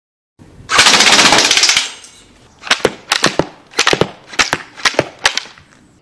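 Homemade wooden rotary-barrel slingshot minigun firing full auto: a loud, rapid, continuous burst of shots lasting about a second, followed by about a dozen separate sharp cracks, some in quick pairs, over the next few seconds.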